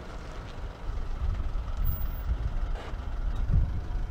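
Wind buffeting the microphone: an uneven low rumble that rises and falls in gusts, growing louder about a second in.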